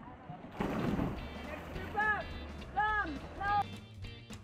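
A swimmer diving off the starting block, a short splash about half a second in. Background music then comes in with a steady bass and three rising-and-falling tones.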